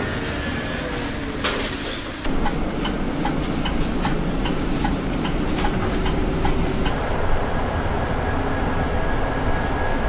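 Mercedes-Benz eCitaro electric city bus driving, a steady rolling and drive-motor noise much like a tram. Through the middle there is a light ticking about twice a second.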